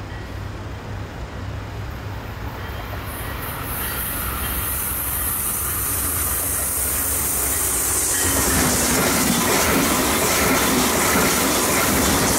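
Brightline passenger train approaching on the curve and rolling past, a steady low rumble of engine and wheels on the rails that grows steadily louder as it comes close, swelling further about eight seconds in.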